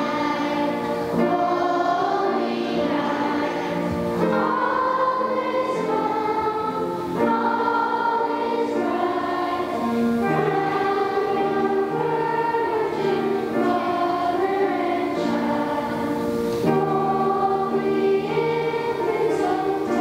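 Children's choir singing a slow song, with long held notes.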